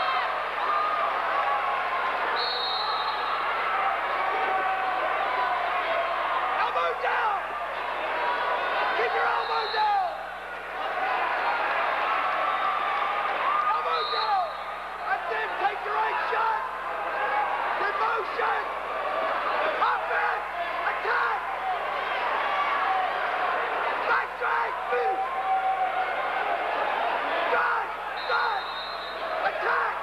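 Arena crowd at a wrestling bout: many voices shouting and calling out at once, with scattered thumps from the wrestlers on the mat.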